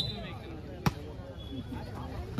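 A volleyball struck hard by a hand, a single sharp slap about a second in, over a low murmur of crowd and voices.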